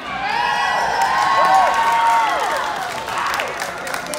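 A crowd of high school students in gym bleachers shouting and cheering loudly, with several voices holding long calls that rise and fall in pitch through the middle, then dying down near the end.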